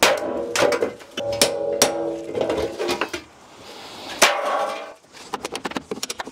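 Hammer blows knocking an old extractor fan vent cover off a timber weatherboard wall. There are about five hard strikes, each with a brief ringing tone after it, and then a run of quick light taps near the end.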